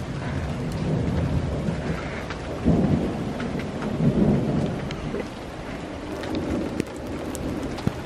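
Rain mixed with small hail pellets falling on a wooden porch deck and railing: a steady hiss with scattered sharp ticks of pellets striking. Two louder low rumbling swells come about three and four seconds in.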